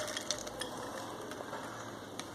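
Fresh green field beans (pachai mochai) tipped from a bowl into a pressure cooker of gravy: a run of small clicks and patters as they slide out and drop, thinning to a few scattered ticks.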